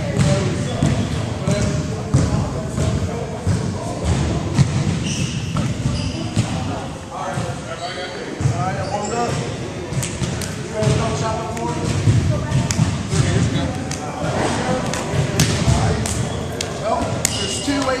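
Indistinct voices talking, echoing in a large gymnasium, with scattered thuds and knocks.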